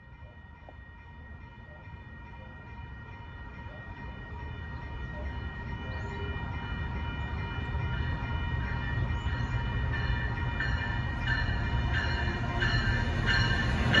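SMART Nippon Sharyo diesel multiple unit approaching, its low rumble growing steadily louder. Over it runs a steady high ringing tone, and in the second half a bell strikes about one and a half times a second.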